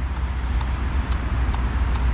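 Steady low outdoor rumble, with a few faint light ticks.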